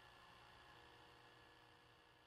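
Near silence: a faint steady hiss.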